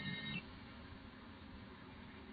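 A sung lullaby note from a TV ends shortly after the start, leaving only a faint steady hiss.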